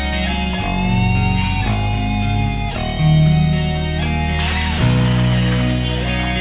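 Heavy metal instrumental intro: guitars and bass holding sustained chords that change every second or two, with a bright crash about four and a half seconds in.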